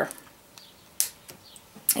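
A single sharp snip about a second in, as household scissors cut through a rosemary stem, followed by a couple of faint clicks of the blades.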